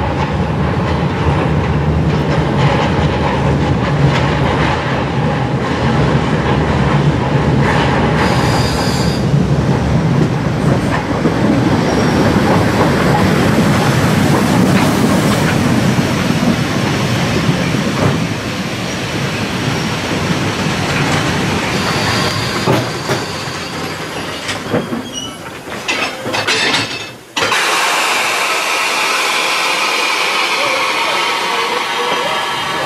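Narrow-gauge steam train, tank locomotive 99 1772 hauling coaches, rolling in alongside the platform: a steady rumble and clatter of wheels on the rails with a few brief high wheel squeals. Near the end the sound changes abruptly to a steady hiss from the standing locomotive.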